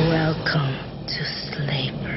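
Movie trailer soundtrack: a voice in the first half-second, then breathy, hissing sounds over music.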